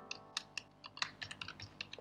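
Typing on a computer keyboard: a quick, uneven run of key clicks, about a dozen in two seconds.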